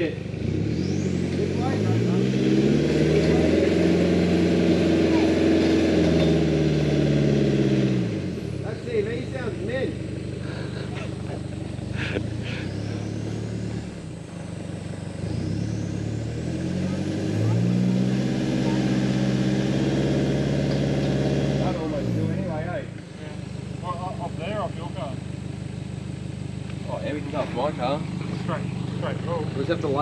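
Toyota Hilux engine revving under load as the truck climbs a rutted mud hill: twice the revs rise over a couple of seconds, hold for several seconds and drop back towards idle.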